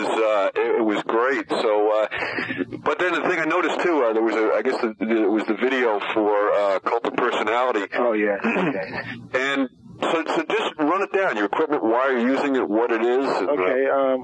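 Only speech: a man talking without a break in a cassette-recorded interview, the sound narrow and thin like a tape or radio voice.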